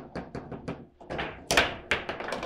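Foosball table in fast play: a quick run of sharp knocks and clacks from the ball striking the rod-mounted figures and the table. The loudest hit comes about one and a half seconds in.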